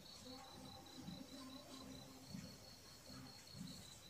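Faint insect trilling steadily at a high pitch, over near-silent room tone.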